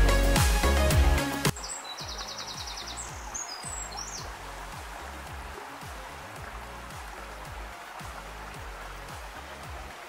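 Music with a beat cuts off about a second and a half in, leaving the steady rush of a small stream running and a faint low beat. A bird gives a short rapid trill a couple of seconds after the music stops.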